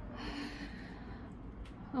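A person's faint, breathy vocal sound over low room noise.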